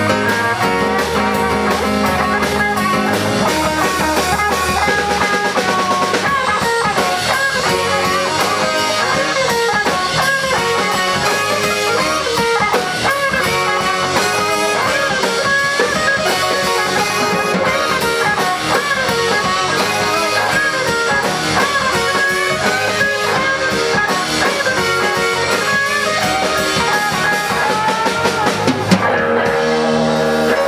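Live blues-rock band playing with no vocals: a Stratocaster-style electric guitar plays lead lines with bent notes over a steady drum kit beat. A sharp louder drum hit comes near the end.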